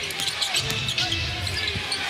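Arena sound of live basketball play: a ball bouncing on the hardwood court amid crowd noise, with arena music underneath.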